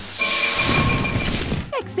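Cartoon magic sound effect of an egg being turned to stone by a glowing stone-gaze: a shimmering rush with a few steady high tones over a crackling, grinding rumble, about a second and a half long, cutting off suddenly.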